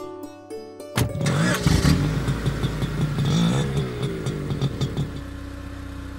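Car engine starting about a second in, revving unevenly for a few seconds, then settling into a steady idle, over soft plucked-string film music.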